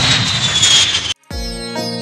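Jet airliner fly-past sound effect: a rushing noise with a high whine that falls in pitch, cutting off suddenly about a second in. Instrumental music with held notes starts right after.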